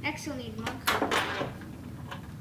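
A child talking quietly, with a couple of short, light knocks in the middle.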